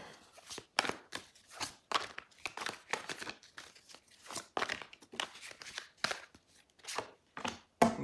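A deck of tarot cards being shuffled by hand: short, crisp card snaps and slaps coming irregularly, about three a second.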